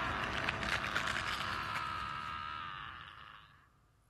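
A noisy, crackling sound effect from the anime's soundtrack that fades away to silence about three and a half seconds in, as the picture goes to black.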